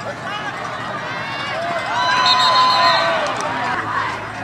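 Football crowd in the stands shouting and cheering over one another during a running play, swelling to its loudest about two seconds in, where one voice holds a long yell.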